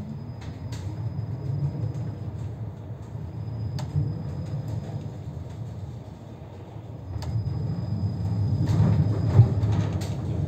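Moscow tram running along its rails, heard from inside the car: a steady low rumble with a few sharp clicks, growing louder for the last few seconds as it moves into a curve.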